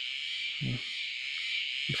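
Steady, unbroken high-pitched chorus of insects in a field, with a brief low voiced sound a little over half a second in.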